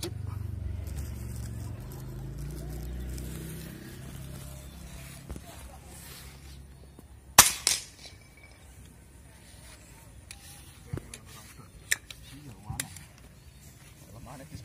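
A single PCP air rifle shot about seven seconds in, a sharp crack followed by a quick second report. Light clicks follow a few seconds later, and a low rumble fades out over the first few seconds.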